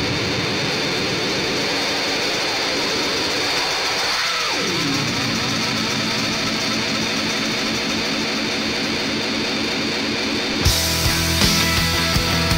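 Noise-rock recording: a dense, wavering wash of distorted guitar noise with a falling glide about four seconds in, then the full band comes in with drums near the end.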